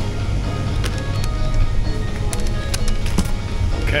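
Music with a steady low bass line.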